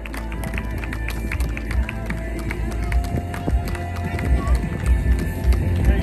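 Music with a voice, and many short sharp clicks or knocks scattered through it.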